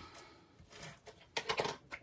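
Cardstock and paper being handled and slid across a work mat, with a short cluster of rustles and scrapes about a second and a half in.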